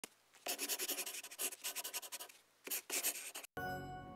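Pencil sketching on paper in quick scratchy strokes, two runs with a short break between them. Near the end a held musical chord begins.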